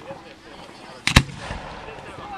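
A firework bursting with a sharp, loud double bang about a second in, over faint background voices.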